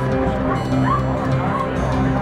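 Live folk music with steady held chords, and a few short, sliding high sounds over it in the middle.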